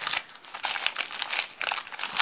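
Crinkling of a small glossy printed gift bag as hands handle it and peel back the washi tape sealing it: irregular crackles throughout.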